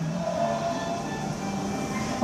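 Audio of a projected video played through classroom loudspeakers: faint steady background music with room hum, between stretches of speech.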